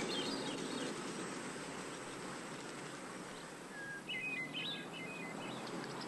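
Quiet outdoor ambience: a steady hiss with a few short bird chirps about four to five seconds in.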